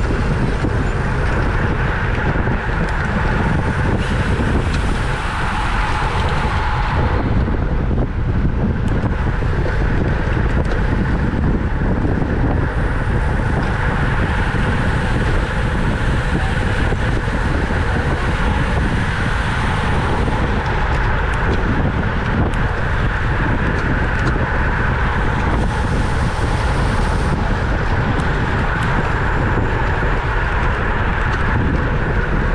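Steady wind rush on a bike-mounted camera's microphone, mixed with tyre and road noise from a road bike riding in a racing pack at speed.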